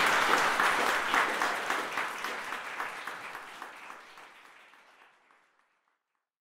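Audience applauding, many hands clapping, fading out steadily to silence about five seconds in.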